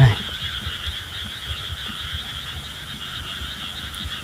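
Frogs calling in a steady night chorus: a continuous high-pitched trill, with low irregular thumps underneath.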